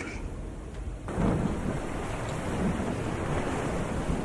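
Storm effect: a low rumble of thunder with wind noise, growing louder about a second in and then holding steady.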